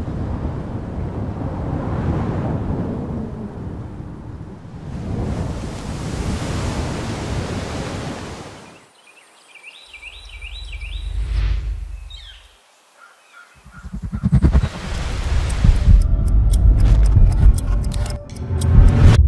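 Cinematic sound design: a swelling, rumbling wash of noise like wind and surf, then a shorter low swell. Louder music with a quick, evenly spaced pulse comes in about three-quarters of the way through.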